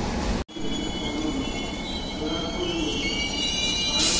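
Passenger train rolling into the station, wheels squealing as it brakes, the squeal growing louder near the end. The sound cuts out briefly about half a second in.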